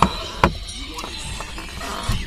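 Handling noise: one sharp click about half a second in and a fainter click about a second in, over a low rumble of the camera and wires being moved.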